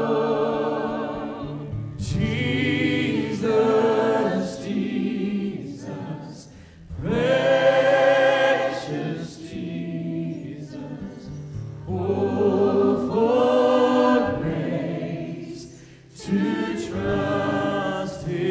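A mixed choir of children and adults singing a hymn chorus, led by a man's voice, with acoustic guitar and keyboard accompaniment. The phrases are held and sung slowly, with short breaths between them about six and a half and sixteen seconds in.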